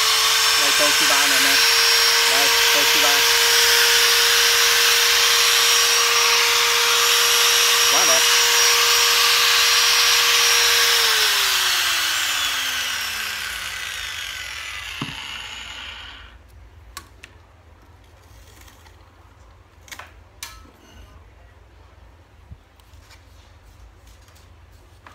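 Toshiba 100 V, 510 W angle grinder running unloaded at full speed with a steady high whine, running smoothly. About eleven seconds in it is switched off and winds down in a falling tone over several seconds, followed by a few light knocks as it is handled and set on the table.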